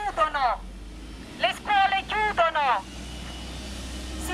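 A woman's voice through a handheld megaphone, harsh and amplified, in two short phrases, over the low rumble of a passing city bus and traffic, which is heard alone in the last second.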